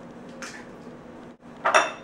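Kitchen dishware clatter. A faint scrape about half a second in, then a loud sudden clink with a short ring near the end, like a bowl or utensil knocked or set down on the counter.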